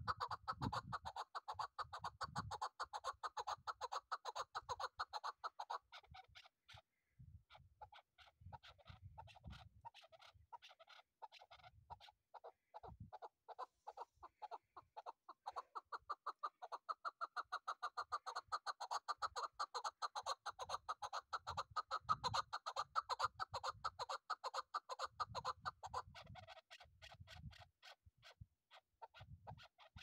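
Caged chukar partridge calling: a long, rapid run of repeated chuck notes that pauses briefly about six seconds in, goes softer, then builds again. Low rumbles come in and out underneath.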